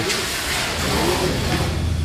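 Steady low mechanical hum under a hissing background noise, growing slightly stronger about a second in.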